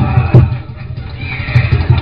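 A sharp smack about a third of a second in, a paddle spank, over loud music with a pulsing bass beat. Wavering, gliding cries like a whinny rise above it.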